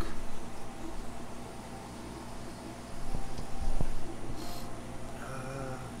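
Steady low hum of aquarium pumps and filtration equipment, with a couple of faint clicks and a brief hiss about four seconds in.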